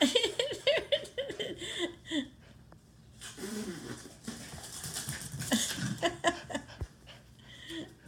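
Small long-haired dogs playing on a tiled floor: claws clicking and skittering on the tile, with short pitched laughs over the first two seconds, a falling vocal sound in the middle, and a single thump near the end.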